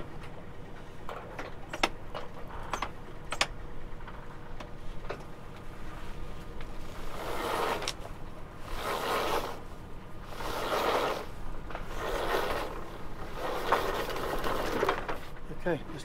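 Yacht's inboard engine running with a steady low drone while the mainsail halyard is hauled up: a few sharp clicks at first, then about five rasping pulls of rope, each about a second long and a second and a half apart.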